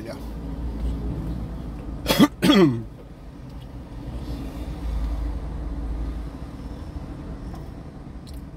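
A man coughs twice in quick succession about two seconds in, over a steady low rumble of street traffic.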